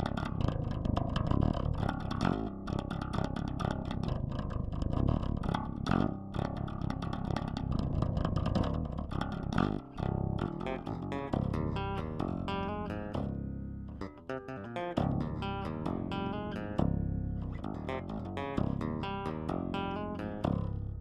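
Electric bass guitar played as a lead line, a fast dense run of plucked notes in the first half, then more clearly separated notes with brief breaks from about halfway.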